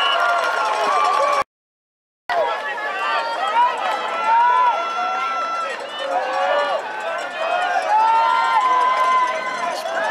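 Many spectators' voices talking and calling out at once, overlapping into crowd chatter. The sound cuts out completely for about a second near the start, then the chatter resumes.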